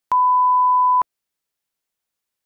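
Colour-bar reference test tone: one steady, pure high beep lasting just under a second, starting and cutting off sharply.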